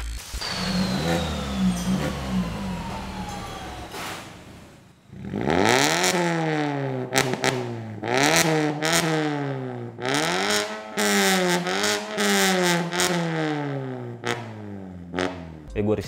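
Mazda 3 hatchback on an Indojaya Valvetronic aftermarket exhaust with its valves closed, idling, then revved in a string of blips about a second apart, the pitch climbing and dropping with each one.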